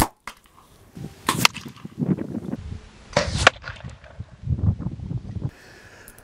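A compound bow fires an arrow: one sharp snap of the string release right at the start. Quieter scattered handling noises follow, including two brief scrapes about one and a half and three seconds later.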